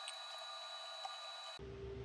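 Low background noise between spoken lines: a faint steady hiss with thin, steady high-pitched whine tones, and a faint click about a second in.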